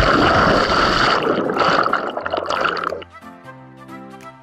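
Splash and churning, bubbling water as a person plunges into a rock pool and the camera goes under with him. The loud water noise cuts off suddenly about three seconds in, leaving background music.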